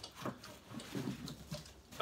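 Cardboard and paper being handled as a gift is unpacked from a shipping box: a few light knocks and rustles.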